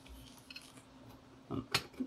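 A few faint light clicks from fingers handling the radio's circuit board in its metal chassis, over quiet room tone with a faint steady hum.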